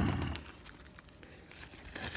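Plastic shipping mailer rustling as it is pulled off small cardboard boxes, louder at first and fading within about half a second to faint handling noise.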